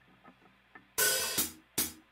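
Drum kit count-in on the hi-hat or cymbal ahead of a metal song: a near-silent first second, then a ringing cymbal hit about a second in and a shorter one near the end.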